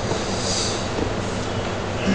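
Steady rushing background noise with a low hum underneath, and a brief hiss about half a second in.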